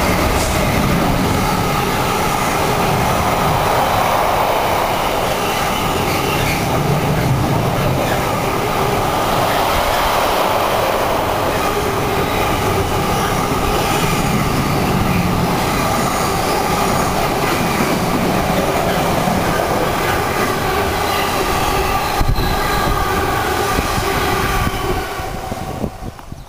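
Container train hauled by a Class 66 diesel locomotive passing at speed: the locomotive goes by at the start, then a long run of container wagons rumbles and clatters steadily over the rails, with one sharp clack near the end before the noise fades away.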